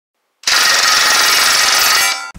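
A rifle firing a long, rapid burst of shots at a steel target, starting about half a second in and running on without a break.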